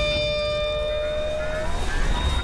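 Closing sting of the show's outro logo animation: after the guitar-driven outro music, a sustained electronic tone is held over a low rumble. The tone stops near the end as a short rising sweep comes in.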